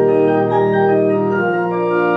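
Church organ playing sustained chords, the harmony shifting about halfway through and again near the end.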